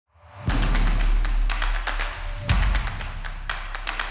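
Short intro music sting with heavy percussion: a deep bass boom about half a second in, another about two and a half seconds in, and sharp hits between them.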